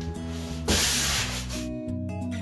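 One loud stroke of a hand sanding sponge rubbed across drywall, lasting about a second and starting a little under a second in, over background guitar music.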